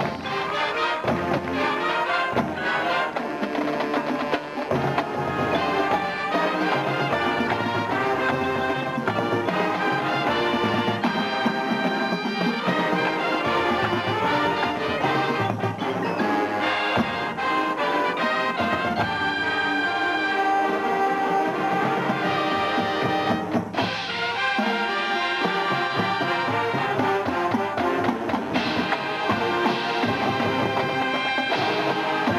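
A marching band playing on the field: brass, including sousaphones, over a drumline and front-ensemble mallet percussion, in one continuous passage with a brief drop in level about two-thirds of the way through.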